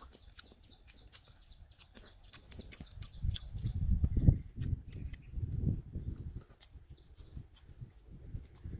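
Vine stems rustling and snapping as small wild fruits are picked by hand and bitten. Faint scattered clicks come first, then irregular low thumps and crunches, loudest about four seconds in.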